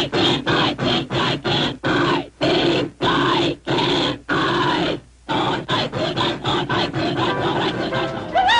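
Cartoon steam locomotive chuffing hard while straining up a steep hill: the chuffs slow down, nearly stop for a moment about five seconds in, then come quicker again.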